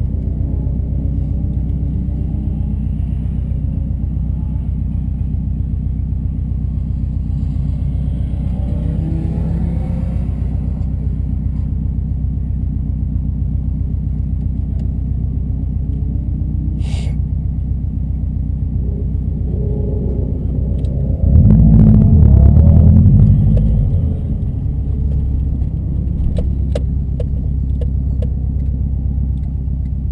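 Subaru's turbocharged flat-four engine idling steadily, heard from inside the cabin. About 21 seconds in the engine noise swells into a louder burst that lasts about three seconds, then settles back to a slightly higher steady running sound.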